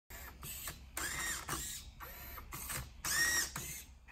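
Motors of a 3D-printed Rubik's Cube solving robot running as its grippers turn the cube, in a series of short bursts, each whine rising and then falling in pitch.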